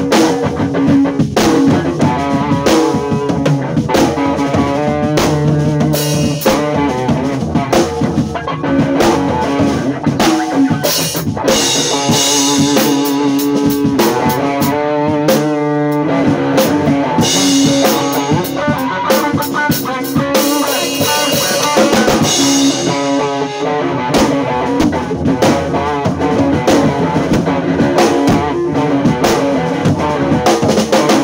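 Electric guitar and drum kit playing a live jam together: the guitar plays chords and riffs over a steady drum groove. Through the middle stretch, heavy cymbal wash rides over the kit.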